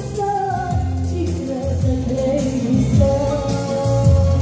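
A woman singing a Lak-language song into a microphone, with long held notes that step up and down in pitch, over an amplified backing track with a heavy bass.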